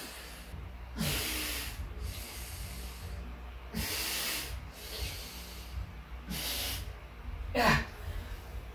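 A man breathing hard from exertion during slow step-ups: four heavy breaths roughly two seconds apart. The last, near the end, comes with a strained, voiced groan.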